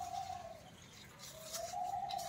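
A dove cooing faintly in the background: two long coos that rise and fall gently in pitch, the second starting just over a second in.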